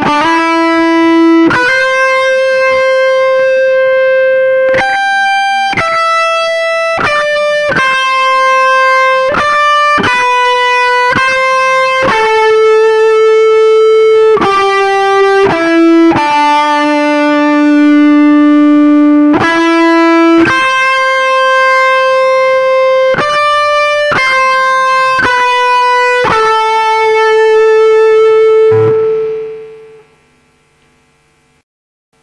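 Les Paul-style electric guitar playing a single-note lead melody in A minor, one note at a time, many of them held and ringing for a second or more. Near the end a last long note fades away.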